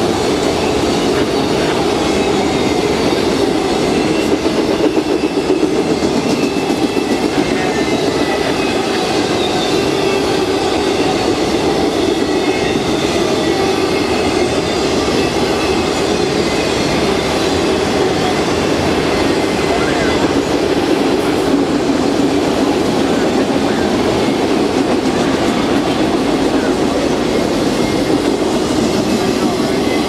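Long freight train of autorack cars rolling past: a steady, loud rolling noise of steel wheels on rail, with faint thin high-pitched wheel squeal over it.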